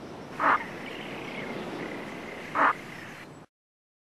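Two short, harsh calls from wetland waterbirds, about two seconds apart, over fainter calls from other birds further off. The sound cuts off abruptly about three and a half seconds in.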